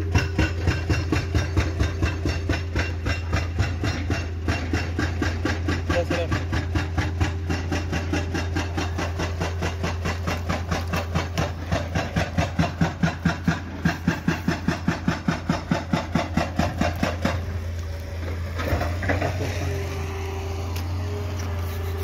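Rapid, regular knocking, about four or five strikes a second, over a steady low hum and a faint steady tone. Around two-thirds of the way through the knocking stops, and sparser, irregular knocks follow.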